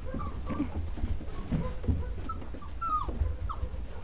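English Cocker Spaniel puppies whimpering with a few short, faint squeaks, one sliding down in pitch about three seconds in.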